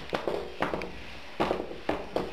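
A few sharp knocks and bumps, four in about two seconds, from handling a framed picture while its glass is wiped with a wet sponge.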